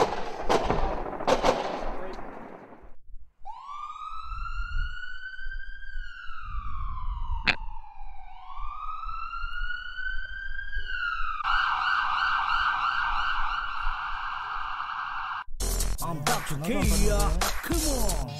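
A siren, most likely an intro sound effect, gives two slow wails that each rise and then fall in pitch, then holds one steady tone for about four seconds. It follows a loud burst of cracking noise in the first few seconds. Music with a hip-hop beat comes in about three seconds before the end.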